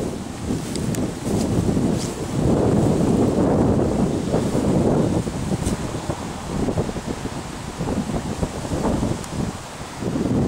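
Wind on the camera microphone: a rumbling noise that swells and drops unevenly.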